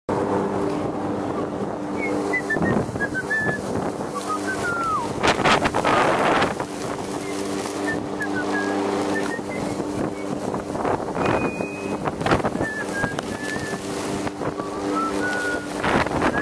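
Lawn mower motor running with a steady hum while mowing grass. Gusts of wind noise on the microphone rise over it twice, about five and eleven seconds in.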